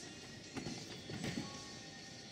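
A gymnast's running footfalls thudding down a vault runway in a quick series of thumps, over background music.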